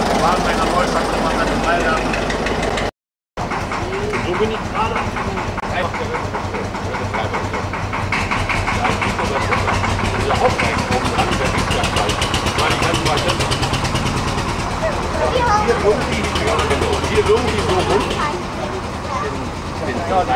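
An idling engine beating fast and evenly, with a crowd's voices around it.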